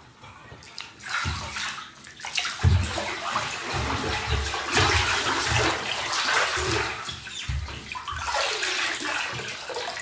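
Bathwater sloshing and splashing as a person in soaked clothes rises from a full bathtub, then water streaming off the clothes back into the tub. The splashing starts about a second in, with low irregular thuds, and grows loud.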